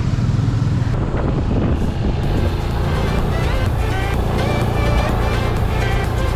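Benelli TRK 502 parallel-twin motorcycle engine running while riding. About two seconds in, background music comes in and carries on over it.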